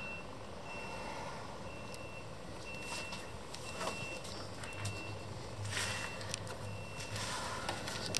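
An electronic warning beeper sounding a single high tone about once a second, evenly spaced like a reversing alarm, stopping about a second before the end; faint clicks of handling underneath.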